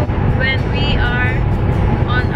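A woman's singing voice with music, drawn-out high notes, over the steady low rumble of a moving car heard from inside the cabin.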